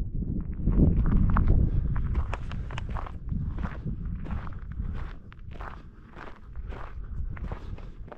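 Footsteps of a person walking on snow at a steady pace, about two steps a second, over a low rumble that eases off about halfway through.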